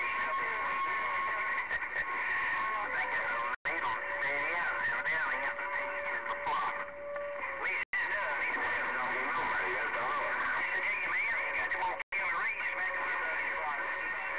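CB radio receiver playing several garbled, overlapping voices with steady heterodyne whistles: a higher one at first, then a lower one from about four seconds in and again near the end. The sound cuts out briefly three times, about every four seconds.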